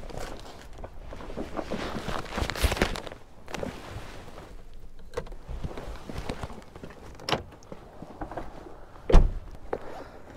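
Rustling and knocking as a bag and gear are handled beside a parked car, with footsteps, and one loud thump near the end.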